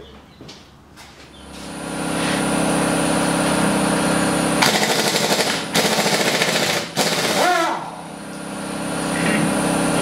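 Pneumatic impact wrench hammering on a Jeep Wrangler's wheel lug nuts, in two loud rattling runs of about a second each, a little after the middle. A steady mechanical hum runs beneath.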